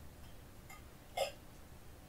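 Faint room tone broken by one short mouth or throat sound, like a small hiccup or click, a little over a second in.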